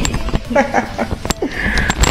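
Indistinct snatches of speech, with a sharp click a little over a second in.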